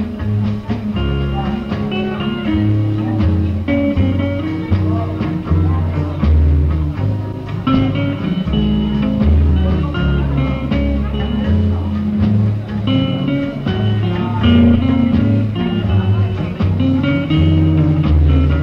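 Indorock band recording: an electric guitar melody over a stepping bass line and drums.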